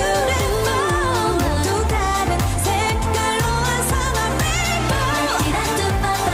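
K-pop song performed by a female group: sung vocal melody over a steady bass line and dance beat.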